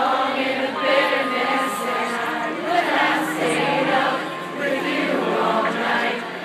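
A large concert crowd singing the song's chorus together, with the band's music and a few held notes underneath.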